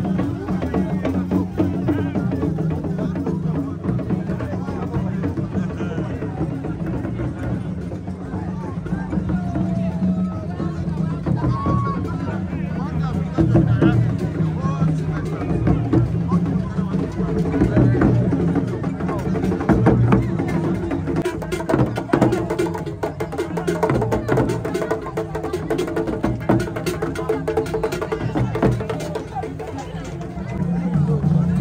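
Drum-led music with percussion, mixed with the voices of a crowd; the drum strikes become sharper and more frequent in the last third.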